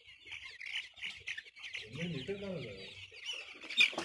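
A large flock of four-week-old Golden Misri chicks peeping together, a dense unbroken chorus of short high chirps. A faint voice is heard briefly about two seconds in.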